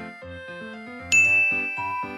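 Soft background music, with a single bright chime sound effect about a second in that rings on and slowly fades.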